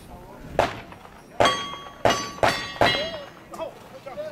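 Five gunshots from a cowboy action shooting firearm. The last four are each followed by the ringing ping of a struck steel target, and the last three come quickly, under half a second apart.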